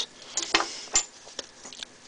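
A few scattered clicks of small metal kit items on a key ring, a folding knife and a magnesium fire-starter bar with carabiners, as they are handled and picked up.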